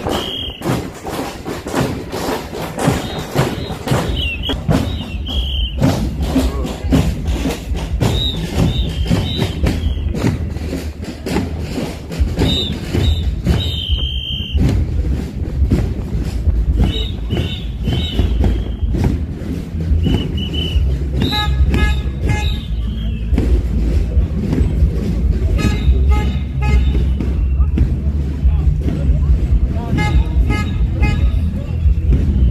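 Drums carried by marchers in a street procession, beaten continuously in dense strokes, with crowd voices and several short high-pitched whistle blasts.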